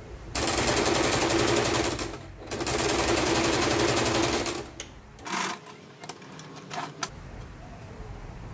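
Janome sewing machine stitching a pocket onto fabric in two runs of about two seconds each, with a brief stop between them. A few light clicks follow as the machine stops and the work is handled.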